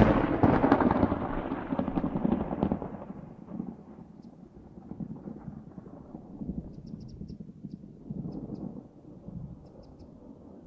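A thunder sound effect: a sudden loud crackling thunderclap right at the start that rolls off over about three seconds into a long, low rumble, swelling again a few times.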